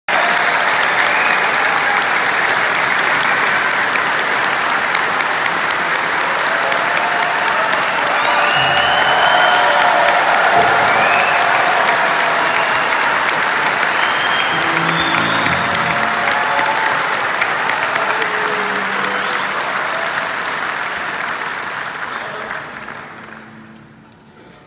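A large concert audience applauding and cheering, with scattered whistles and shouts; the applause dies away over the last couple of seconds.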